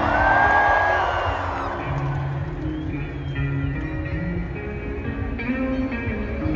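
Live band playing on a festival stage, heard from the crowd: electric guitars and bass notes held over the rhythm, with a long high held note over a noisy haze in the first two seconds.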